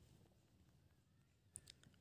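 Near silence, with a couple of faint clicks shortly before the end.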